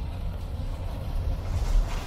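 Steady low rumble inside the cab of a 2018 Ford F-150 with the 3.5-liter EcoBoost V6, cruising at highway speed near 2,000 rpm while towing a dump trailer. Tyre noise from the rain-soaked road rides over it.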